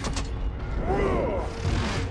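Film battle sound effects: a giant robot firing a heavy gun, with a sharp bang at the start over continuous low rumble and mechanical clanking.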